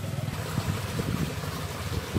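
Low, uneven outdoor rumble with no distinct event in it.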